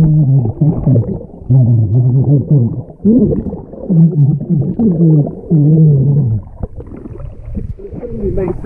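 A man talking underwater in a swimming pool: his voice comes through muffled and garbled, the words lost, with air bubbling from his mouth. The talking stops about six and a half seconds in, leaving only churning water as he comes up.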